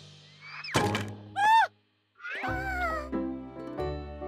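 Cartoon sound effects and score: a thunk under a second in, then a short, high, squeaky cartoon-character cry rising and falling in pitch. After a brief silent gap about halfway, music comes back with more squeaky character vocalising.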